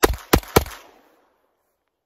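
Three loud, sharp bangs in quick succession, about a third of a second apart, each ringing out briefly before fading within about a second.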